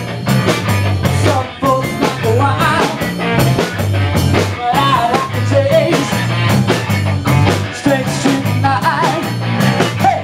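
Garage rock band playing live: drum kit keeping a steady beat under electric guitar, with a pulsing low end and a wavering melodic line over the top.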